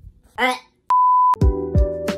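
A short edited-in electronic beep held at one pitch for about half a second, like a censor bleep, cut off suddenly as background music with a regular thudding beat comes in.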